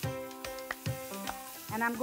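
Background music with plucked, held notes over a faint sizzle of curry leaves spluttering in hot ghee with tempering seeds. Speech starts near the end.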